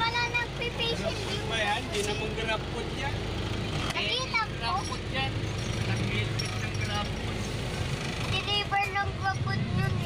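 Steady low rumble of a vehicle's engine and road noise heard from inside the cabin while it drives, with people talking over it.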